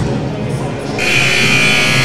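Gym scoreboard horn sounding once, a steady buzzy blast of about a second that starts about a second in, signalling the end of a timeout. Arena music plays underneath.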